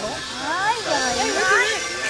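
A person's voice, likely a child's, sliding up and down in pitch without words, as in playful singing or vocalising, over a faint steady whine.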